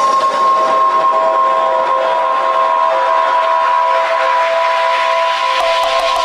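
A sampled train horn: a steady chord of several tones held throughout over a hiss, inside a dance-music mix. Near the end, faint drum ticks and low thumps of a beat begin to come in under it.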